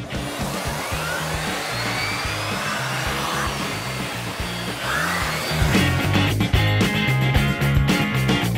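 Background music with a steady bass beat; under it, for about the first five and a half seconds, a Dirt Devil Lift & Go canister vacuum's motor runs as a steady hiss while its hose cleans stairs. The music then grows fuller with close-spaced drum hits.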